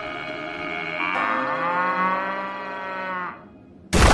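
A cartoon cow's long moo that rises in pitch and then holds for about two seconds. Right at the end comes a sudden loud crash as the cow hits the ground.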